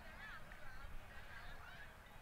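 Faint outdoor bird calls, thin and wavering, clearest in the first second, over a low steady rumble.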